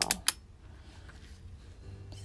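Two sharp plastic clicks as a folding selfie-stick tripod is snapped shut, both within the first third of a second, the second the louder.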